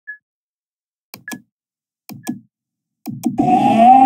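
Three pairs of computer mouse clicks about a second apart, some with a short high beep, then a video's audio starts playing about three and a half seconds in: a loud sustained electronic sound holding two steady tones.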